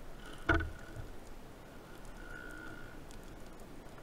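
Underwater sound picked up by a camera on a speargun during a dive: a single knock about half a second in, then faint scattered ticks, a low rumble and a brief faint thin tone past the middle.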